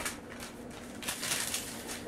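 Soft rustling and handling noise of a long paper receipt being pulled out and unfolded, in two short swells near the start and about a second in.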